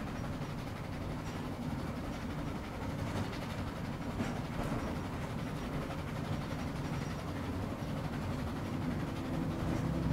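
Train sound effect: a train chugging along, a steady low rumble from the carriage with a few faint clicks from the track.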